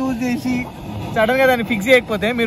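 Only speech: a man's voice talking close by, in two stretches with a short pause between them.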